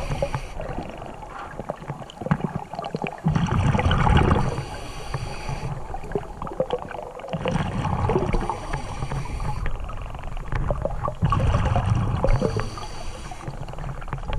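Scuba regulator breathing heard underwater: three slow breath cycles, each a burst of exhaled bubbles gurgling upward followed by the hiss of the regulator on the inhale, roughly every four seconds.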